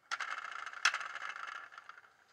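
Handling noise from a diecast model car being turned in the hand: a continuous scraping, rattling rub with one sharp click a little before the middle.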